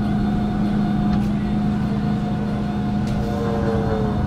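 A steady engine hum at an even pitch. In the second half a fainter second engine note comes in and glides slightly down.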